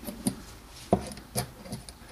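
Small metal valve parts handled between fingers: a few light clicks and rubs as the valve spring retainer (top hat) is slid over the tapered collets on the valve stem. The loudest click comes about a second in.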